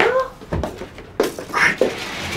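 Wordless human vocal sounds: a short pitched call that rises and falls at the start, then several short, sharp mouth or breath sounds.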